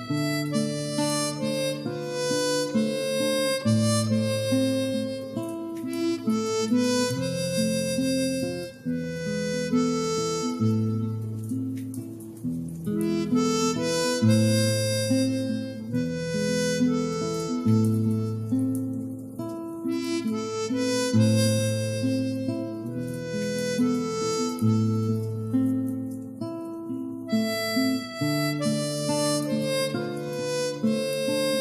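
Harmonica playing a slow melody over an instrumental accompaniment whose bass note changes every second or two.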